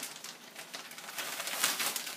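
Plastic zip-top bag crinkling and rustling as it is shaken to coat catfish in cornmeal, softer at first and stronger from about a second in.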